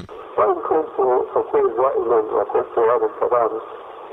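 Speech only: a man talking in an old recording with a thin, telephone-like sound.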